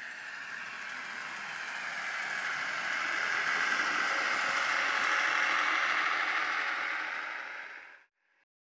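A train passing by: a steady rush of running noise that swells to its loudest about five seconds in, then fades and cuts off suddenly at the end.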